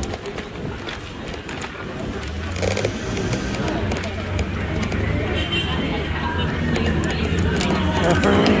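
Busy street ambience: nearby passers-by talking over a steady low rumble of traffic that sets in a couple of seconds in, with occasional small clicks and knocks.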